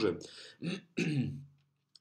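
A man's voice speaking, trailing into a drawn-out, level-pitched hesitation sound, then a short silence.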